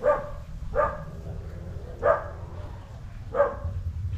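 A dog barking: four single barks spaced about a second apart.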